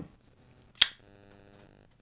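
A folding knife's steel blade flicked open, locking with one sharp click about a second in.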